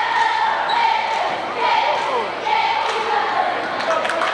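Spectators talking across a large gymnasium, with a basketball bouncing on the hardwood court.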